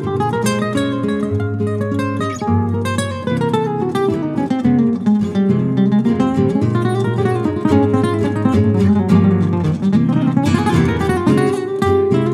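Guitar duo: a Spanish guitar and a second nylon-string acoustic guitar played together live, plucked melodic runs moving up and down over a bass line and chords.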